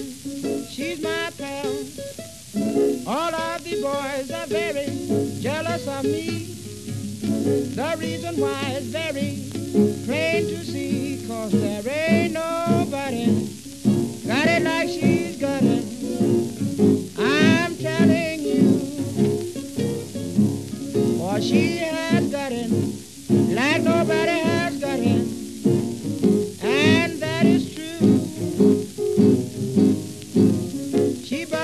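Instrumental break of a late-1920s piano-and-guitar blues recording: steady piano chords underneath, with bent single-string guitar notes sliding up and down above. The hiss of an old shellac 78 rpm disc runs behind the music.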